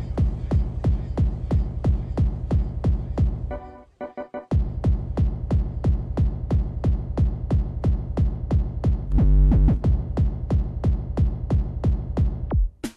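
Fast, driving free-party tekno from a live set: a hard kick drum pounding about three to four beats a second. About four seconds in, the kick drops out briefly and a short stuttering chopped sample fills the gap. Near the tenth second a sustained pitched synth sound lies over the beat.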